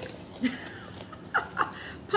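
A woman's short, breathy effort noises, including two quick huffs a little past the middle, as she strains to push a glass thermometer through an aluminium-foil lid.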